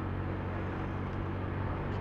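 Motor scooter's engine running steadily while riding at a constant pace, a low even hum with road and wind noise.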